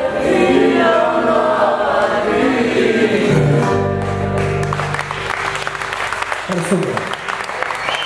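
A male voice sings a traditional Cretan song over a Cretan lute (laouto), with the singing ending about three and a half seconds in. The lute holds a final low chord, and applause follows from about halfway.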